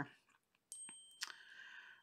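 Near silence with room tone. About a second in come a couple of faint clicks and a brief, faint high tone.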